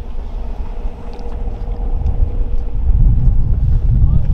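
Wind buffeting the camera microphone: a low, gusty rumble that grows louder in the second half.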